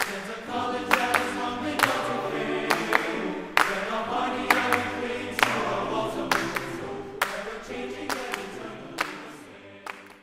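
Closing music: a choir singing, with sharp beats a little under one a second, fading out near the end.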